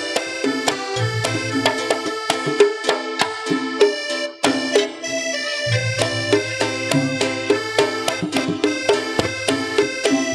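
Live Javanese campursari music: an electronic keyboard plays a sustained melody over a bass line, with quick strokes of a kendang hand drum. The music breaks off briefly a little after four seconds in.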